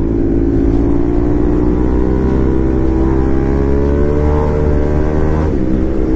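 Bajaj Pulsar RS 200 single-cylinder engine running under throttle, heard from the rider's seat, its pitch rising slowly as the bike accelerates, with a brief change in pitch near the end.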